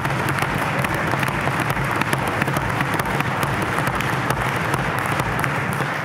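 A chamber of legislators applauding a speech line, a steady dense clatter of many hands that starts fading near the end.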